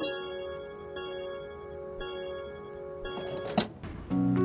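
Soft background music of sustained bell-like chime tones, a new chord struck about once a second, with a brief swish near the end.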